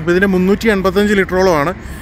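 Speech: a voice talking over a low, steady hum.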